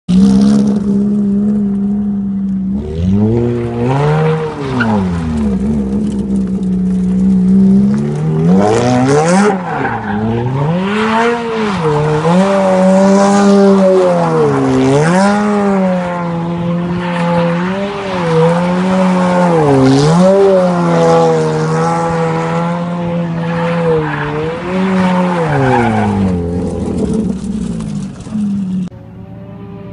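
Ferrari F430's V8 revving up and down while the car drifts in circles, with tyre squeal under the engine. The engine holds a steady pitch for the first few seconds, then rises and falls every second or two with the throttle until near the end.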